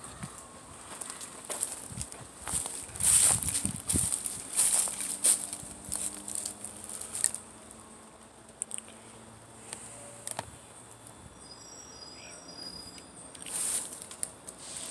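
Steady high-pitched insect drone in the trees. In the first half, irregular scuffing and rustling noises come and go, louder than the drone.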